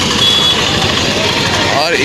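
Busy street noise from a crowd, with motorcycle engines running, and one short high beep about a quarter second in.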